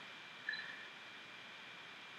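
Faint steady hiss of room tone, with one brief faint high blip about half a second in.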